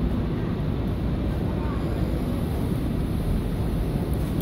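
Steady low background rumble, even and unbroken, with no distinct impacts or rhythm.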